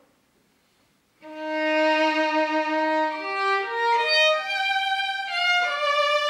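Solo violin, a 2019 Maurizio Tadioli copy of an Andrea Amati, bowed. After about a second of near silence it comes in on a held low note, then climbs in steps through a series of single notes into a higher passage.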